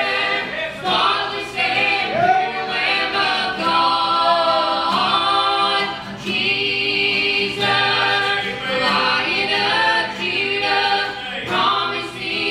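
A man and two women singing a gospel song together in harmony over microphones, with a strummed acoustic guitar underneath the voices.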